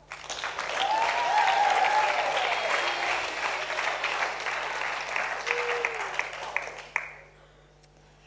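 Audience applauding, starting at once and fading out about seven seconds in.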